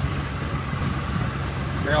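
Boat motor running steadily while the boat is under way, a low even hum under a constant hiss of wind and water.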